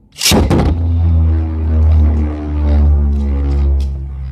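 A Beyblade Burst top launched into a plastic Beystadium: a short harsh rip at the launch, then the top spinning on the stadium floor with a loud, steady low hum. A few sharp clicks come near the end.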